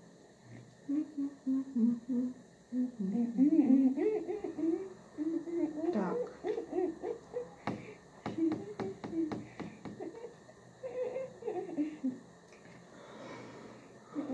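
A person humming a wandering, tuneless melody, with a quick run of sharp clicks about eight seconds in.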